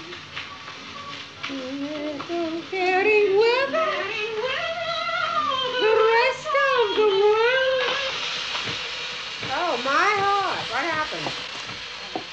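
Old 1934 phonograph record of a woman singing, held notes with wide vibrato in several phrases. Surface hiss from the record rises about two-thirds of the way through.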